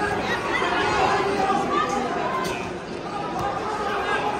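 Crowd of spectators and coaches chattering and calling out at once, echoing in a large gymnasium, with a couple of faint knocks in the second half.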